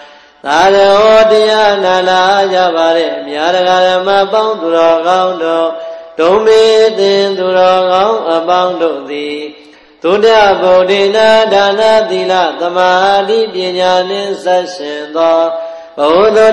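Melodic Buddhist chanting by a voice, sung in three long phrases that glide up and down in pitch, with brief breaks about six and ten seconds in.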